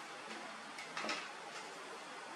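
A few light plastic clicks and taps about a second in, over a steady faint hiss: a small plastic toy vehicle and a baby macaque's hands and feet on a tile floor.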